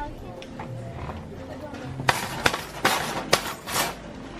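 Shopping cart with a plastic basket and metal frame rattling as it is pushed. A quick series of short, sharp rattles comes in the second half.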